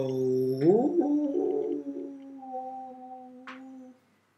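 A young man's voice sounded into his cupped hands: a low note that slides up about an octave a second in and is then held steady, stopping abruptly near the end. A short click comes near the end.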